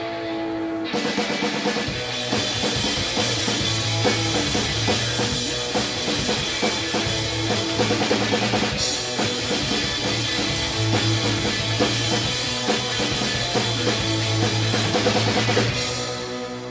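Live rock band playing: electric guitars with a full drum kit, kick, snare and cymbals. The drums come in about a second in and play hard until just before the end.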